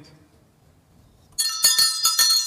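Small brass handbell rung by hand: a sudden bright jangle of several quick strikes starting about one and a half seconds in, its tones ringing on.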